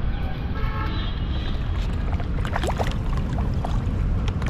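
Low, steady rumbling of water and wind noise on the microphone as an action camera is pushed into the pond water, with a few short splashes about two and a half seconds in.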